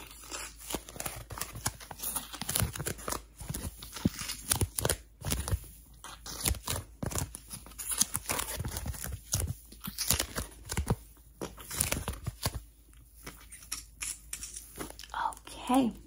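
Close-miked ASMR handling sounds: irregular sharp taps and crinkly, tearing-like rustles, from a stamp being pressed and a soft prop handled right at the microphone.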